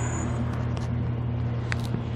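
Battery-electric remote-controlled helicopter tug running its track drive motors, a steady low hum as it turns the helicopter in place.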